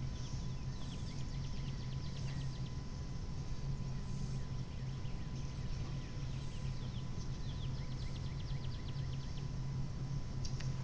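Outdoor ambience: a steady low hum under repeated trains of high, rapid ticking trills from small creatures, insects or birds.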